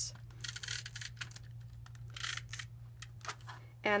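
Snail adhesive tape runner pressed along the back of a strip of patterned paper, giving two brief hissing passes, one about half a second in and one about two seconds in, with small clicks between.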